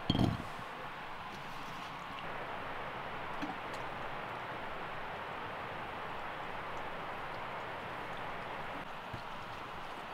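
A cherry tomato drops into a pan with a single dull thump at the very start, followed by a steady outdoor hiss with a few faint clicks.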